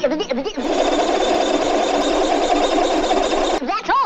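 Porky Pig's stuttering sign-off: a long, rapid, even sputter of stammered syllables, breaking into a few pitch-gliding words near the end.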